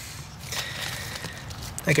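Soft, even rustling noise in a pause between words, with a man's voice starting again near the end.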